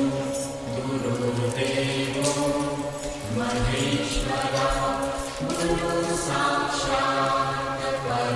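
Devotional mantra chanting with music: voices sing long held notes over a steady low drone.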